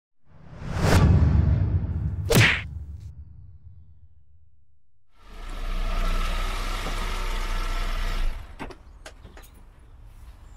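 Two whoosh sound effects in the first few seconds. Then a Peugeot 107 runs steadily as it pulls in, cutting off abruptly about eight seconds in, followed by a couple of light clicks.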